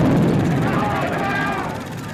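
A sudden loud crash like a thunderclap from an old film soundtrack, its deep rumble fading slowly over about two seconds, with wavering voice-like tones above it.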